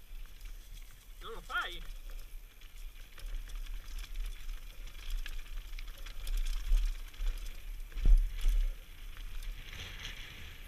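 Mountain bike descending a rocky dirt trail, heard from a helmet-mounted camera: tyres crunching over dirt and stones and the bike rattling, with wind rumbling on the microphone. A sharp loud knock about eight seconds in, the loudest sound, as the bike hits something on the trail.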